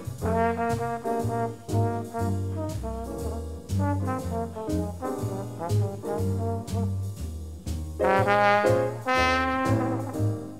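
Mid-1950s jazz octet recording with the brass to the fore, trombone and trumpet playing melodic lines over plucked string bass and drums. About eight seconds in the horns get louder and brighter.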